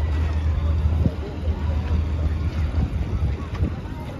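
Open-air festival-ground ambience: a steady low rumble with faint crowd voices and a few scattered knocks.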